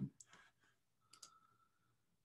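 Near silence with a few faint clicks, one pair near the start and another just after a second in, the later one with a brief faint tone.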